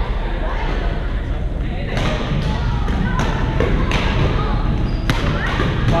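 Badminton rackets striking shuttlecocks: a run of about five sharp hits, beginning some two seconds in, over the steady chatter of players in a large gym.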